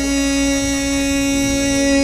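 Male Egyptian inshad chanter holding one long, steady sung note, with a low background hum underneath.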